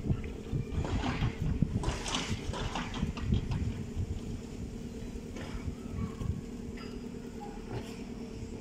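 Wind buffeting the phone's microphone as a gusty low rumble, strongest in the first few seconds and easing off after that, with a faint steady hum underneath.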